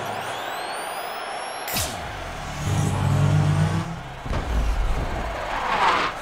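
Sci-fi light cycle sound effects: an electronic engine whine that sweeps downward as a cycle passes near the end, with a sharp crack about two seconds in and a low drone in between.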